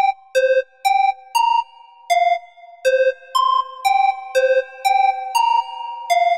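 Electronic music made in the Auxy app: a synthesizer melody of short, clear notes, about two a second, whose tones linger and overlap, with no drums.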